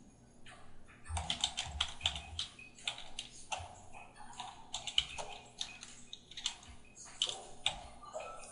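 Typing on a computer keyboard: a string of keystrokes in short, uneven bursts, starting about a second in.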